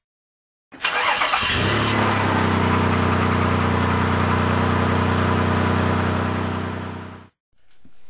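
Car engine sound effect: an engine starts up about a second in, settles into a steady even run, then fades away and cuts off near the end.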